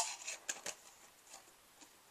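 A few light clicks and taps from small metal storage tins being handled, all within the first second.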